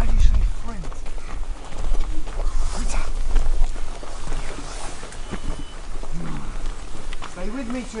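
Footsteps crunching and scuffing on rocky gravel as a group walks, with wind rumbling on the microphone, strongest at the start, and brief snatches of voices near the end.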